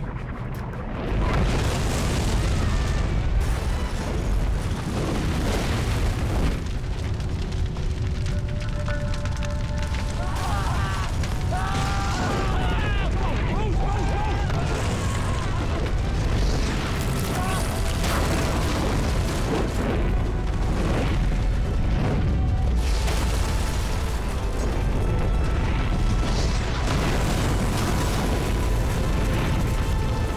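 Film sound effects of a volcanic bombardment: a heavy, continuous low rumble with repeated booming explosions as flaming rocks hit the street. Dramatic score runs under it.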